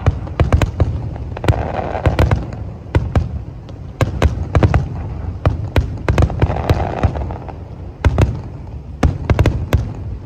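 Aerial fireworks display: irregular volleys of sharp bangs from bursting shells, several a second with short lulls, over a low rumble.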